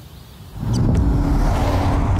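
A car driving along a dirt road, coming in suddenly and loud about half a second in with a low rumble and a rushing noise.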